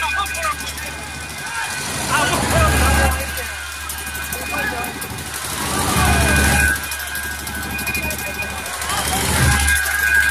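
Dense street crowd of many voices shouting and calling at once, with a deep booming that swells up three times, about two, six and nine seconds in.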